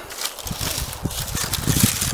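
Styrofoam plates rustling and crackling as a gloved hand pulls at a shot-through stack, with many small irregular knocks.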